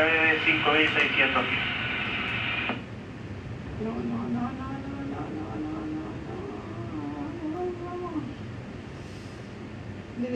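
A voice talking over a steady low hum, with a hissy band that cuts off about three seconds in.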